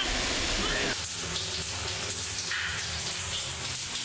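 Water pouring and splashing as a steady rush. A waterfall for about the first second, then a shower running in a small tiled cubicle, a little quieter.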